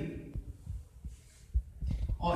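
A pause in speech with a few soft, low thumps and knocks, clustered near the end.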